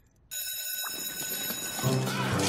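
Electric school bell ringing, starting suddenly about a third of a second in and holding steadily. Near the end, music and crowd chatter come in.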